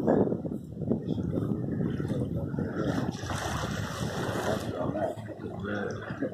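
Wind buffeting the microphone and water washing along the hull of a sailing boat under way, with a louder hissing rush of water about three seconds in that lasts a second and a half.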